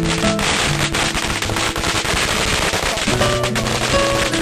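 A long string of firecrackers going off in a rapid, continuous crackle of pops that thins out near the end, with music playing over it.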